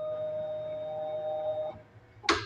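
LE 420 lens auto edger giving off a steady whine of several held pitches as its edging cycle ends and it comes to rest, cutting off abruptly near the end.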